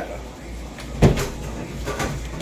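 A single sudden knock or thump about halfway through, over low room noise.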